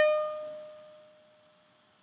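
A single bowed violin note at a steady pitch, rich in harmonics, fading away over about a second and a half into silence.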